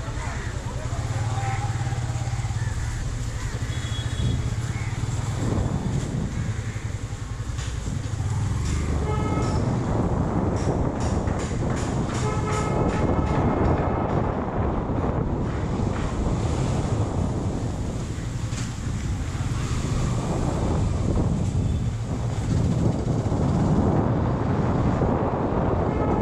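Motorcycle engine running while riding, first slowly through traffic and then along a clear street. From about nine seconds in, a louder rushing noise joins the steady low engine note, typical of wind on the camera's microphone as the bike gathers speed.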